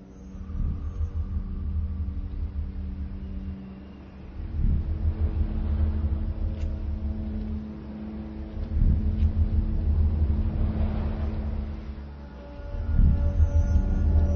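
Dark ambient film score: sustained low drone tones under deep rumbling bass swells that build and fade about every four seconds.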